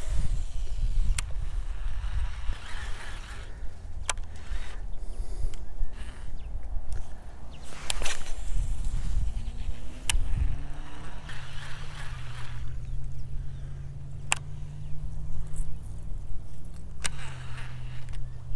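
Wind buffeting a camera microphone with handling noise, broken by a few sharp clicks. About ten seconds in, a steady low motor hum joins and holds.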